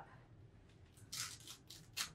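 Faint rustling of a cloth garment cover being pulled open by hand, starting about a second in, with a short click near the end.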